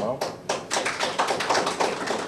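A rapid run of sharp taps or clicks, roughly a dozen a second, filling the pause in the speech.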